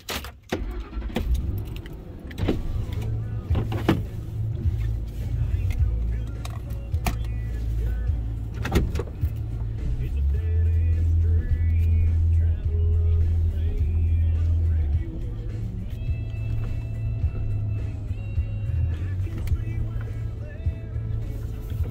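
A car engine starts and settles into a steady low idle, heard from inside the cabin, with music playing over it.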